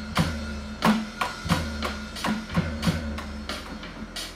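Band music with drums played along on an electronic drum kit: sharp drum and cymbal hits land about three times a second over a steady bass line.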